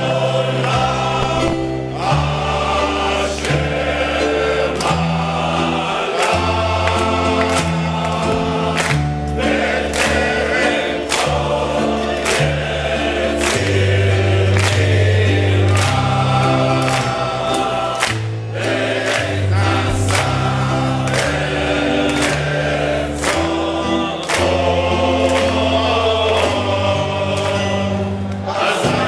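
A large men's choir singing in parts, holding sustained chords that change every second or so over deep bass notes.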